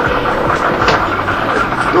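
A bingo ball-draw machine's air blower running with a steady rushing noise and a few faint clicks of balls, as the next ball is pushed up into the draw tube.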